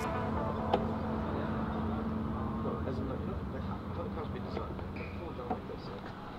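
A couple of sharp mechanical clicks from the sports seat of a Nissan GT-R being adjusted by hand, one about a second in and one near the end. They sit over a steady low rumble with faint voices in the background.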